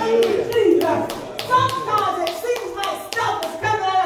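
Hands clapping in a steady, fast rhythm, about four claps a second, under a woman's voice preaching.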